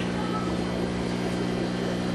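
Steady low hum of an aquarium air pump running, unchanging throughout.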